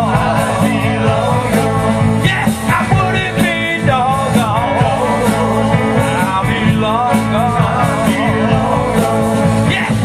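Live rock band playing, with electric guitars, bass and drums under a wavering lead melody line that bends in pitch.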